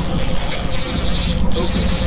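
Boat engine running steadily at trolling speed, a constant hum with one steady mid-pitched tone, under wind buffeting the microphone.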